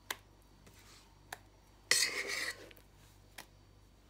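A metal utensil spreading cream in a bowl: a few light clicks against the bowl and one louder scrape about halfway through.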